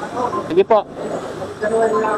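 People's voices talking, with one loud, brief exclamation about half a second in.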